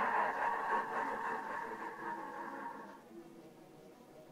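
The last sung note of an isolated vocal track lingers in its reverb and fades out over about three seconds, leaving near silence.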